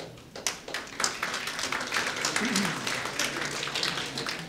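Audience applauding: many overlapping hand claps that start about half a second in and thin out near the end.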